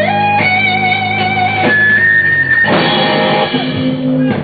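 Live rock band music led by an electric guitar, with sustained notes that slide up in pitch and waver, turning to a fuller chordal sound about two-thirds of the way through.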